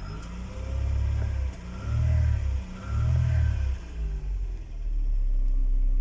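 Mercedes-Benz 190E's M102 four-cylinder petrol engine, heard from inside the cabin, revved up and back down three times, then settling to a steady idle near the end. This is the changeover from petrol to LPG running.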